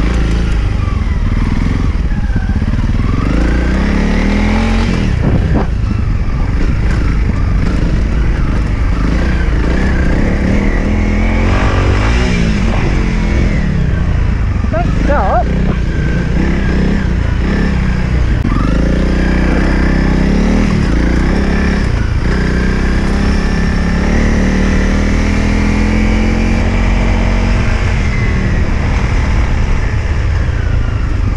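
Honda CRF trail bike's single-cylinder four-stroke engine ridden hard, its pitch rising and falling again and again as it revs up and shifts, with steady wind noise on the microphone.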